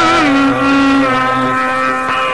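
Carnatic music in raga Chakravakam: a long held melodic note that bends briefly near the start, then holds steady.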